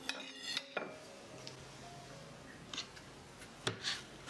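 A metal fork clinking against a ceramic plate: a quick run of clinks in the first second, a couple more later, and the sharpest one near the end, some leaving a short ring.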